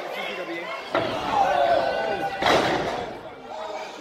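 A wrestler slammed onto the ring mat: a sharp knock about a second in, then a heavy crash about two and a half seconds in, the loudest sound here. Crowd voices shout and chatter in a large hall throughout.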